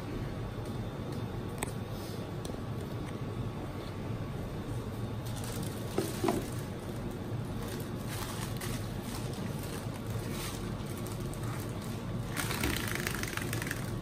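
Steady low hum and water noise of a running reef aquarium's pumps and circulation, with a short louder rush of noise near the end.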